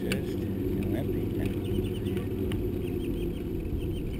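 Steady rumble of a bicycle rolling on asphalt, mixed with wind on the microphone, with a few sharp clicks and some faint high chirps.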